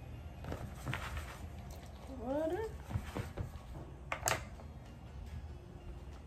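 Kitchen handling sounds as water and oil are added to brownie mix in a mixing bowl: scattered light knocks and a sharp clink about four seconds in. A short rising squeaky call sounds about two seconds in.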